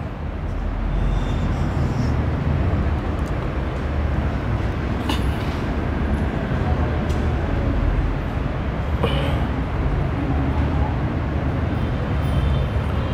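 Steady low rumbling background noise, with two short scrapes about five and nine seconds in.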